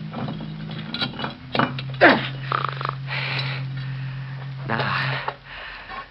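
A man's strained grunts and heavy breaths as he works to squeeze through a narrow opening, with a drawn-out falling groan about two seconds in. A low steady hum runs underneath.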